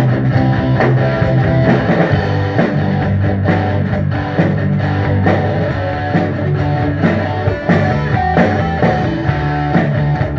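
A rock band playing live without vocals: electric guitar, bass guitar and drum kit with a steady beat.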